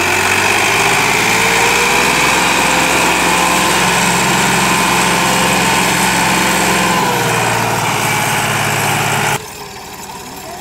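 Massey Ferguson 260 tractor's diesel engine running steadily, its pitch lifting slightly a couple of seconds in and shifting again about seven seconds in. Near the end the sound drops suddenly to a much quieter engine.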